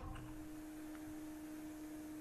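Faint steady hum on one low pitch, with a fainter tone above it, over quiet room noise.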